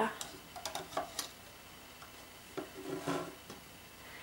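Light clicks and taps of rubber bands and fingers on the clear plastic pegs of a Rainbow Loom as bands are stretched over them, a few sharp ticks in the first second or so, then softer handling noise.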